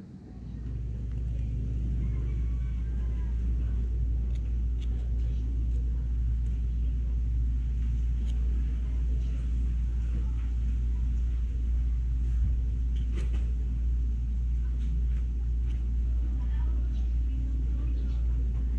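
A steady low rumble that rises over the first couple of seconds and then holds, like a motor running, with faint scattered clicks of a knife cutting into sea urchin shells.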